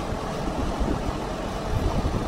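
Allis-Chalmers 170 tractor engine running steadily, a low even rumble.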